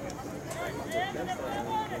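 A person talking, starting about half a second in, over a steady outdoor noise bed.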